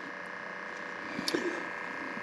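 Faint steady hum with a few light clicks about a second in.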